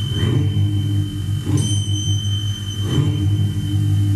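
FM radio music from a portable boombox speaker: sustained low held tones under a thin steady high tone, with soft swells about every second and a half.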